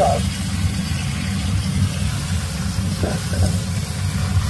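Lamb spine pieces being stir-fried in a wok over a high gas flame, under a steady low rumble.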